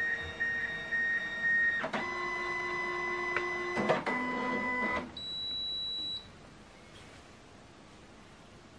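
Flatbed scanner of a Canon i-SENSYS MF651Cw multifunction laser printer scanning a page. The scan-head motor whines steadily, then shifts to a different whine with a click about two seconds in. It clicks again near four seconds and stops about five seconds in, followed by a brief high steady tone of about a second.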